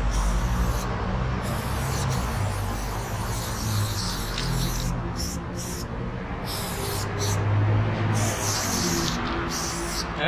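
Aerosol spray-paint can hissing as paint is sprayed onto a wall, in a series of short and longer bursts. Music plays underneath throughout.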